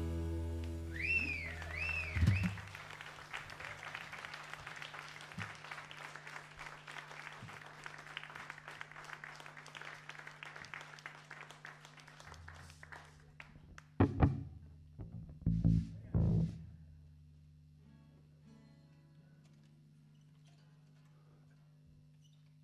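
A blues band's last chord on electric guitar, bass and drums rings out and fades. Scattered applause from a small audience follows for about ten seconds over a steady amplifier hum. A few loud, low thumps come about two-thirds of the way through, then only the hum is left.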